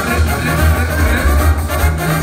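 A banda sinaloense playing live: trumpets and the rest of the brass section over a steady, heavy low bass line.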